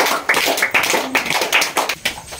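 A small group clapping their hands: quick, uneven claps that run together.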